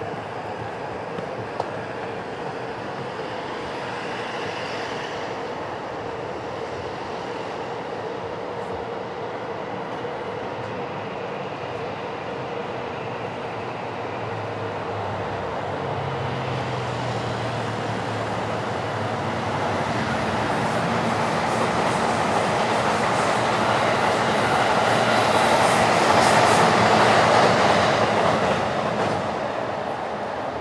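A train passing. Its rumble and rail noise build steadily through the second half, peak a few seconds before the end, then begin to fade.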